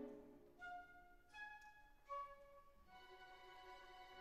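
Quiet background music: a chord fades out, three separate soft notes follow, then a soft chord is held from about three seconds in.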